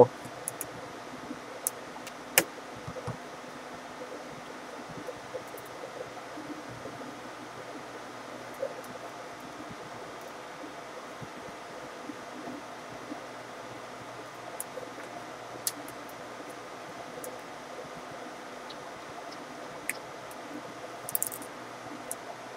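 Small scattered clicks and metallic clinks of a small screwdriver working the tiny screws that hold an HP ProBook 430 G1 laptop's LCD panel in its lid, with the sharpest click about two seconds in, over a steady low hiss.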